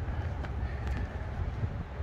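Outdoor background noise: a steady low rumble under a faint hiss, with no distinct event.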